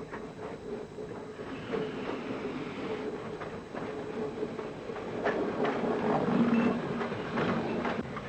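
Narrow-gauge steam train running into a station, with wheels clattering and coupling clanks that grow louder about five seconds in, heard on an old film soundtrack.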